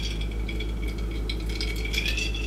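Ice cubes clinking and rattling lightly against a glass jar as someone sips iced water from it, in small scattered ticks, over a steady low hum.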